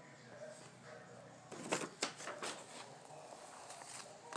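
Paper sheets rustling and crackling as they are handled and a page is turned, in a cluster of sharp crackles about halfway through.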